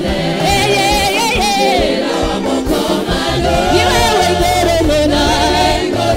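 Church praise team singing a gospel praise song together into microphones, several voices in chorus over steady low instrumental accompaniment.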